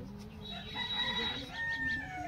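A long pitched bird call with several tones, starting about half a second in and ending on a held note about a second and a half later.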